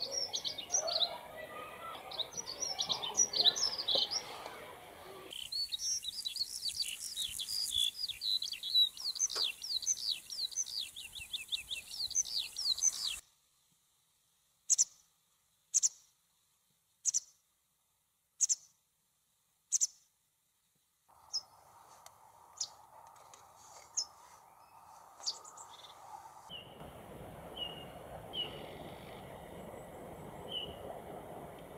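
Birds chirping and singing. First come fast runs of short high chirps. Then, over near silence, a single bird gives one short high chirp about every second and a half, followed by scattered chirps over a faint steady hum.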